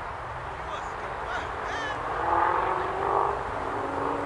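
Birds calling: short, high chirps in the first half, then two louder, harsher calls about two and three seconds in.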